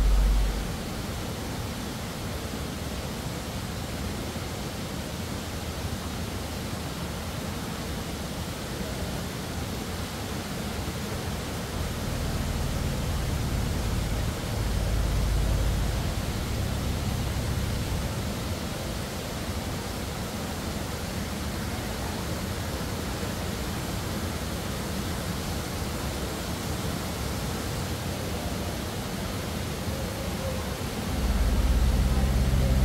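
Steady background hiss with no distinct event, and a low rumble swelling right at the start and again about halfway through.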